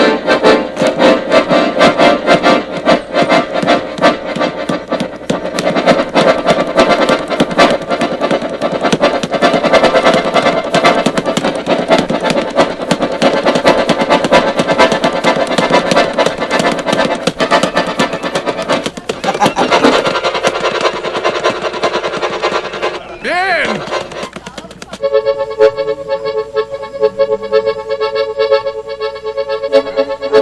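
Accordion playing a lively, rhythmic tune with bellows-driven chords. Near the end, after a brief swooping glide, it settles into long sustained chords.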